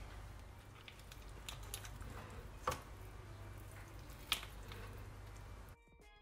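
Garlic butter being spooned over a cooked lobster in a glass bowl: faint wet dripping and squishing, with two sharp clicks of the utensil against the shell or dish, the second over a second after the first. Music begins near the end.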